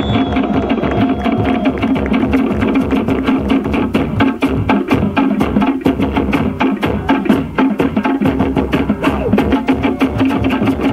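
Fast Polynesian drumming: a rapid, driving beat of many sharp strokes a second, steady throughout.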